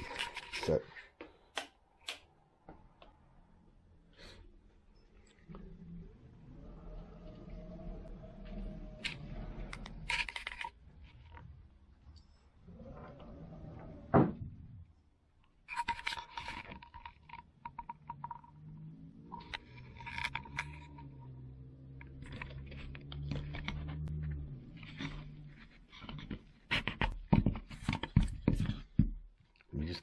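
Workshop handling noises: scattered knocks, clicks and scrapes, with one sharp knock about halfway through and a run of them near the end, over a low hum in places.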